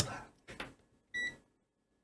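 A digital multimeter giving one short electronic beep, a single clear tone, about a second in, while its probes are held across a voltage regulator's input and output to check that they are isolated.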